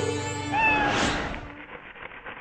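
A cat meowing once, briefly, about half a second in, over music that fades away.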